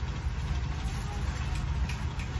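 A steady low rumble, like a motor running in the background.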